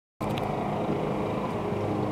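Steady low background noise, hum and hiss, with a faint click shortly after it begins.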